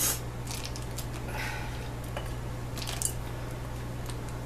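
Wooden spoon scraping the inside of a glass mixing bowl in several short, light strokes as thick pie filling is poured out, over a steady low hum.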